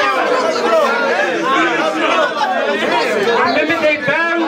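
Speech only: several men's voices talking over one another in a crowded room, as loud, overlapping chatter.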